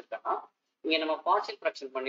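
Speech only: a voice talking in short, halting phrases with a brief pause.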